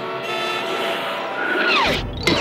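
Cartoon street-traffic sound effects: car engines running. Near the end, a cartoon falling sound drops in pitch.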